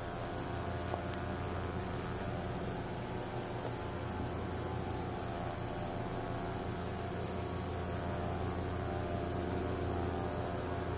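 Crickets and other insects singing in a steady high trill, with a fainter chirp pulsing at a regular rate beneath it.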